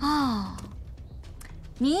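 A woman's short voiced sigh, falling in pitch over about half a second. Her speech begins near the end.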